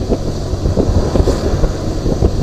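Wind buffeting the microphone of a moving motorcycle in gusty thumps, over the low rumble of the ride.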